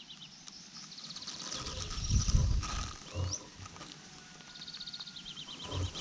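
Small songbirds singing, fast trills of high notes repeated, over a loud low rumbling noise that swells about two seconds in and again near the end.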